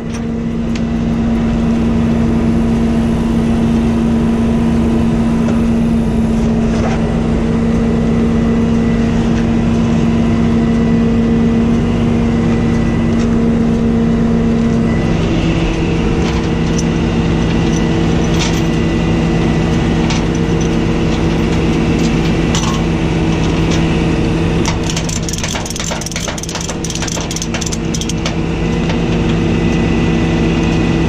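Rollback tow truck's diesel engine running steadily close by, its tone shifting about halfway through. A run of metal clinks and rattles comes near the end as chains and a ratchet strap are handled on the steel deck.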